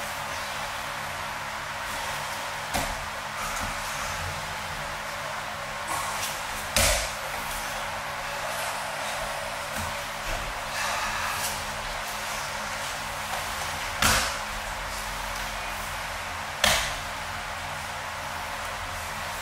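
Bodies thudding onto padded mats as aikido partners are thrown and take breakfalls. There are about four sharp impacts spaced several seconds apart, the loudest near seven, fourteen and seventeen seconds in, over a steady background hiss.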